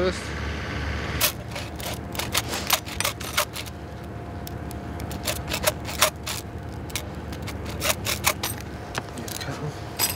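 Irregular sharp metallic clicks and clinks as the outer aluminium strands of a steel-cored conductor are trimmed away by hand to bare the steel core, over a steady low hum.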